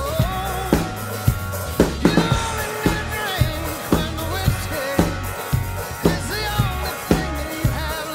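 Drum kit played live along to a recorded country-rock song, with a steady beat of sharp drum hits over the song's melody.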